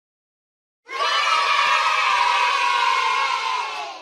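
A group of children cheering together. It starts abruptly about a second in, holds for about three seconds, then tails off.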